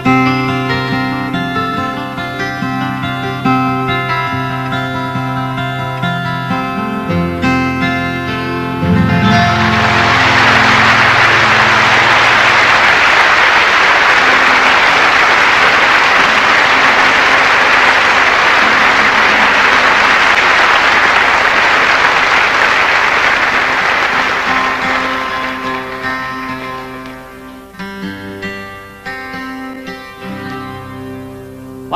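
Acoustic guitar playing the closing bars of a folk song and ending on a low held chord, then a live audience applauding for about fifteen seconds before the clapping dies away. Near the end a guitar is picked quietly again.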